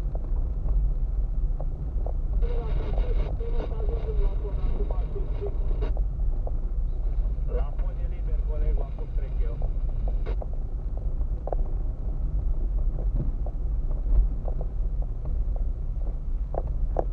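Low, steady engine and tyre rumble inside a car driving slowly over a rough road, with scattered knocks from bumps. A voice is heard twice in the middle, without clear words.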